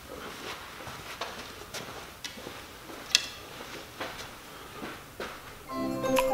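Faint scattered knocks and one sharp, ringing click about three seconds in. Music with xylophone-like tones begins just before the end.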